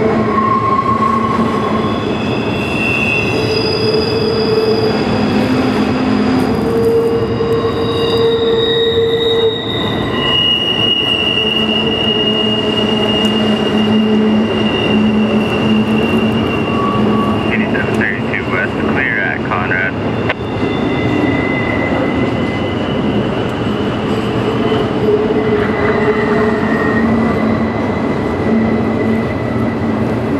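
Double-stack container cars of a freight train rolling across a steel trestle bridge: a steady heavy rumble of wheels on rail. Over it, drawn-out steady squealing tones from the wheels come and go, several seconds each, with a burst of wavering squeals about two-thirds of the way through.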